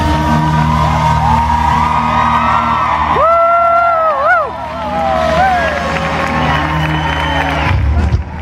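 Live country-rock band playing, led by an electric fiddle with long held notes and sliding, bending pitches over bass and drums. The fiddle line ends near the end.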